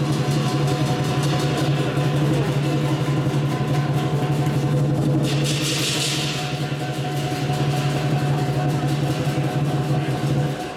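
Lion dance percussion: a large drum played in a rapid, sustained roll, with a brief bright crash-like wash about five seconds in.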